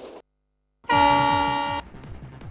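A train air-horn blast used as a sound effect in a title sequence. It sounds after a brief silence about a second in, holds steady for about a second, and cuts off sharply, over a beat of low drum hits.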